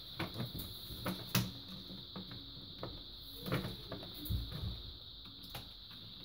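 Scattered light clicks and taps as the plastic backlight reflector sheet of an LED TV is handled and pressed against the LED panel. The sharpest click comes about a second and a half in, and a cluster of knocks falls about halfway through.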